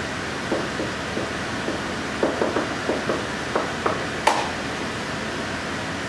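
Steady background hiss of room and recording noise, with a few faint short scratchy sounds in the middle and a single sharp click about four seconds in.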